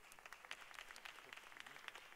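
Faint, scattered audience clapping: a few irregular, sharp claps.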